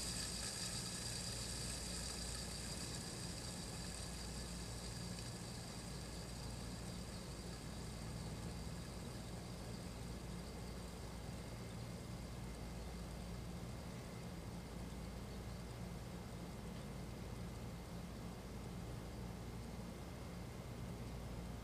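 3D-printed planetary gear fidget spinner on open ceramic 608 bearings spinning freely after a flick, a faint high whirr that slowly dies away over a steady low hum.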